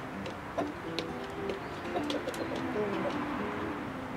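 Soft background music of short plucked notes, with brief high bird chirps over it in the first half.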